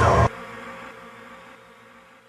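A faint buzzing drone with a few steady tones slowly fades out. It starts when a louder sound cuts off suddenly about a quarter second in.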